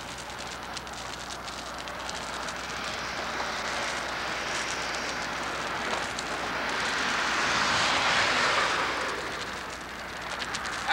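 Steel chain dragged across a concrete bridge deck, a continuous scraping rattle with many small clinks: chain-drag sounding, in which hollow, delaminated spots of the deck show themselves by a hollower sound. The noise swells to its loudest about eight seconds in, then eases off.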